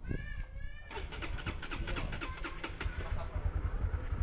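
Honda CB150X single-cylinder motorcycle engine being electric-started: a short starter whine, then the engine catches about a second in and idles with a fast, even ticking beat.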